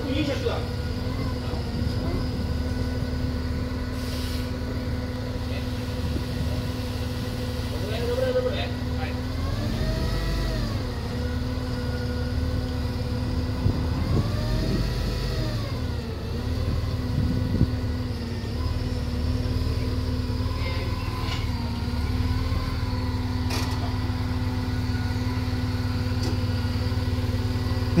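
Forklift engine running steadily while it lifts and places a car, revving up and back down twice, about ten and fifteen seconds in.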